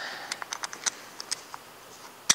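A quick irregular run of light clicks and ticks as a harness's seat-belt-style buckles and nylon webbing are handled and fastened, easing off about a second and a half in.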